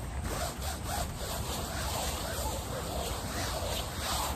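A brush scrubbing a trampoline mat in quick, repeated back-and-forth strokes.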